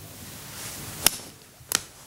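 Two short, sharp clicks about half a second apart, the first louder, against faint room noise during a pause in the storytelling.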